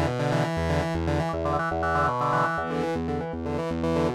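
Novation Peak synthesizer playing a looping sequence of sustained notes over pulsing bass notes. Its oscillator uses a user wavetable whose waveform is being redrawn live, so the tone changes as it plays.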